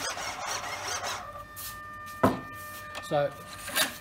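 Radio-control elevator servo buzzing as it drives the elevator through the rotary drive, then a steady high whine as it holds position. A single sharp click a little past two seconds in.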